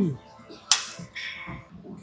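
A short groan falling in pitch at the start, then one sharp clack about three-quarters of a second in, fading quickly.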